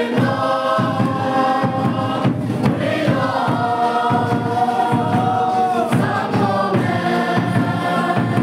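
A congregation of many voices singing a hymn together, with a long held note in the middle.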